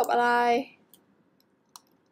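Computer mouse clicks: two short, sharp clicks, one at the start and one near the end, as options are picked from a web form's dropdown menu.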